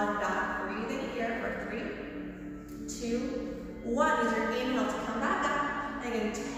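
A woman speaking, with soft background music underneath.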